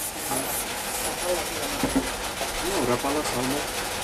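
Faint rubbing and handling noise from a fishing pole being turned over in the hands, with a low voice murmuring briefly a few times.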